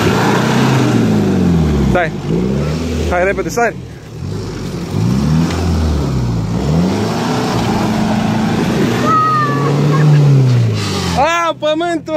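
Jeep Cherokee XJ engine revved up and down over and over as the 4x4 works through deep mud ruts, the pitch climbing and dropping about once a second, with a longer held rev near the end. Voices shout briefly partway through and near the end.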